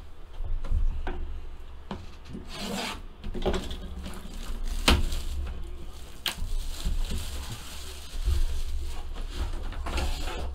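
Plastic shrink wrap being torn and crinkled off a Panini Flawless card box, with rubbing and a scattering of sharp clicks and knocks as the box is handled and set down.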